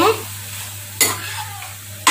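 Steel spoon stirring cooked Maggi noodles in a kadai, with one sharp clink of the spoon against the pan about a second in.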